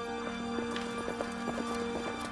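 Hoofbeats of several horses galloping, a quick irregular run of thuds, over background music with long held notes.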